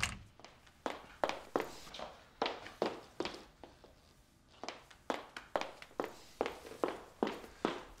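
High-heeled shoes clicking on a hard floor: a woman walking at a steady pace of about two or three steps a second, stopping about halfway through, then walking on.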